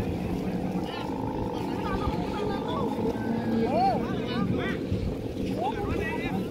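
Bamboo hummers (guangan) on Balinese kites droning in the wind, several steady pitches layered at once, with crowd voices and gliding calls over them.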